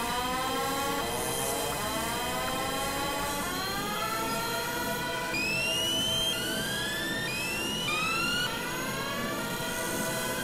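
Experimental electronic synthesizer music: overlapping tones that each glide upward over about a second, one after another, over a steady hissing noise bed. From about five seconds in, higher gliding tones join in.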